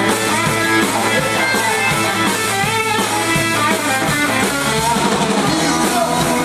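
Live rock and roll band playing: electric guitar over bass and drum kit, loud and steady, in a passage without singing.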